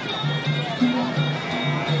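Traditional Muay Thai fight music (sarama): a reedy oboe-like pipe over a steady pattern of low hand-drum strokes with occasional higher strokes, and small cymbals ticking about three times a second.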